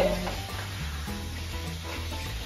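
Shrimp frying in salsa in a skillet, sizzling steadily as it is stirred with a wooden spatula.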